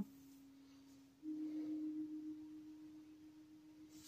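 A steady low pure tone, with no other sound. About a second in, a slightly higher tone comes in and slowly fades.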